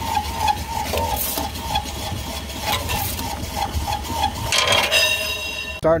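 Trotline being hauled in over the side of a small boat: water splashing and the line rubbing and knocking against the hull, over a steady low rumble. A brief high-pitched whine comes near the end.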